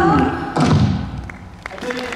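Backing music with singing breaks off, and a single heavy thump sounds about half a second in, then dies away into a brief lull broken by a few faint clicks.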